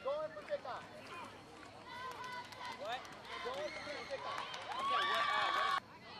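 Football spectators shouting and cheering during a play, many voices overlapping. Near the end a long, steady, high held note rises above them, then all the sound cuts off suddenly.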